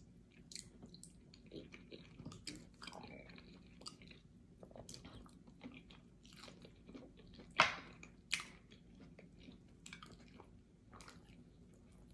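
Close-miked eating of fufu and ogbono soup: wet chewing, lip smacks and sticky mouth sounds coming irregularly, with the sharpest smack about seven and a half seconds in.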